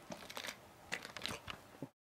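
A handful of light clicks and knocks from handling a Karabiner 98k rifle, spaced irregularly. The sound cuts off suddenly near the end.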